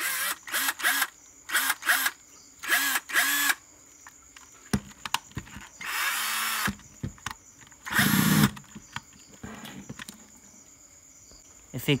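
Black & Decker cordless drill motor run in a series of short trigger bursts, each spinning up and stopping. The longest comes about six seconds in. It is a test that the drill runs on its newly fitted LiFePO4 battery pack in place of the dead Ni-Cd one.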